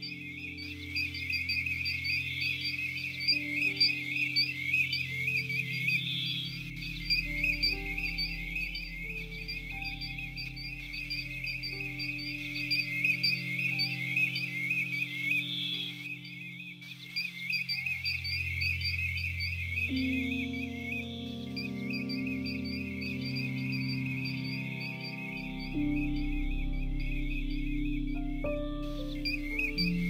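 Slow background music of sustained, shifting chords, over a dense, unbroken chorus of high flight calls from a large flock of golden plovers.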